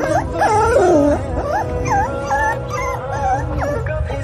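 Young puppies whimpering and whining in high, wavering cries that slide up and down in pitch, several in quick succession, over background music.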